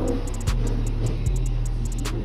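Background music with a steady beat: sustained bass notes under a regular tapping rhythm.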